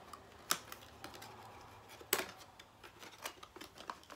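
A small cardboard skincare product box being opened and handled: a series of irregular clicks, taps and scrapes of paperboard. The sharpest come about half a second in and about two seconds in.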